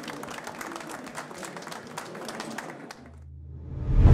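Audience applauding with quick, dense hand claps at the close of a talk. The clapping cuts off suddenly about three seconds in, replaced by a low hum that swells into music at the very end.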